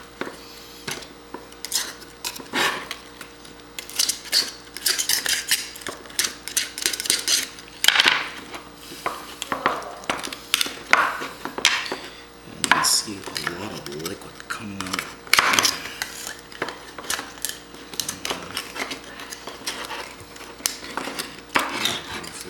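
Kitchen knife scraping and clicking against a geoduck's shell as the shell is cut and pried away from the body on a cutting board, in irregular clicks and short scrapes.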